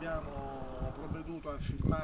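Men's voices in low, indistinct talk and drawn-out hesitation sounds.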